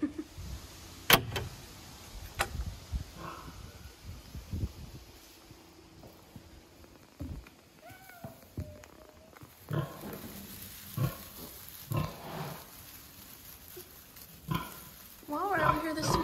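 Sow grunting in short, spaced grunts beside her newborn piglets in a metal farrowing crate. Two sharp knocks come in the first few seconds.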